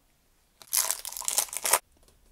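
Wrapper of an Upper Deck MVP hockey card pack being torn open and crinkled, a little over a second of crackling that starts about half a second in and stops abruptly.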